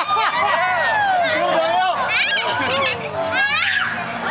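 A group of excited voices, children's and adults', shouting and calling over one another in play, with high rising and falling shrieks.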